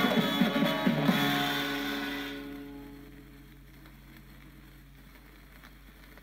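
A 1960s guitar-band pop single playing from a 45 rpm vinyl record on a turntable. The song fades out over the first three seconds, leaving only faint surface noise as the stylus runs on in the groove.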